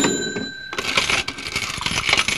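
Coin sound effect: a sharp metallic ding that rings briefly, then about a second and a half of coins jingling and rattling.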